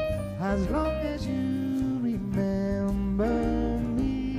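Live band playing a song: a sung melody with sliding, bending notes over bass and drums.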